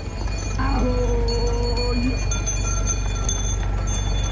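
A cow mooing once: a long, level call that starts about half a second in and lasts over a second, over a steady low rumble.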